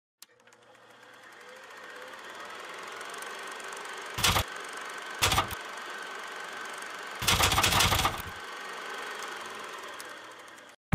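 Intro sound effect of a movie film camera's mechanism running: a steady whirring clatter fades in over the first two seconds. Three louder bursts of clatter come about four, five and seven seconds in, the last lasting about a second.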